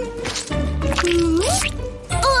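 Cartoon background music with a paint-dabbing sound effect as a brush daubs dark paint onto paper.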